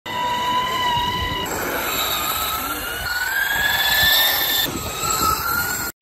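High-pitched electric skateboard motor whine at speed over rolling and wind noise. It changes abruptly twice: first a steady whine, then one that climbs slowly in pitch as the board speeds up, then a higher steady whine, cutting off just before the end.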